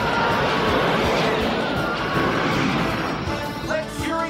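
Action soundtrack music over a continuous din of cartoon battle effects: laser-blast and explosion sounds.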